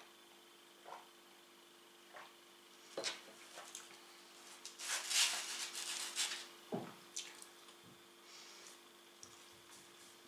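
A drinking glass set down on a wooden table with a sharp click, then a slice of pizza pulled free from its cardboard box, a burst of rustling and tearing that is the loudest sound, with a knock on the box just after.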